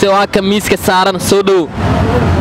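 A man talking in Somali into a close microphone, his speech stopping shortly before the end, where a low rumble is left.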